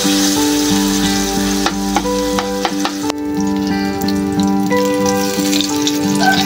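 Egg-and-eggplant omelette mixture sizzling in hot oil in a frying pan, with a few clicks of the spoon and fork against the pan about two seconds in. Background music plays over it.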